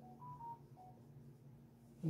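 Faint, brief squeaks of a marker tip on a whiteboard as a word is written: four or five short tones at different pitches in the first second, over a low steady hum.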